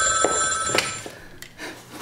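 A telephone ringing: one ring that stops about a second in, followed by a few faint clicks.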